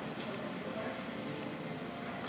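Steady room tone: an even background hiss with a faint, steady hum.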